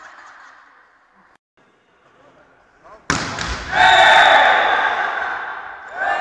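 Quiet sports-hall ambience, then about halfway through a sudden loud hit from volleyball play, followed at once by loud shouting from the players that fades over about two seconds.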